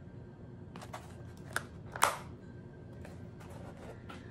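Clicks and taps from a metal-framed clutch purse being handled, closed and put down; the sharpest two come about a second and a half and two seconds in, with fainter ticks after.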